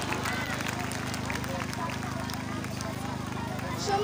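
A pause between spoken sentences: faint background voices of the gathered people over a steady low hum.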